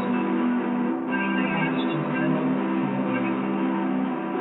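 Instrumental music: a guitar playing steady, ringing chords, recorded through a poor-quality microphone.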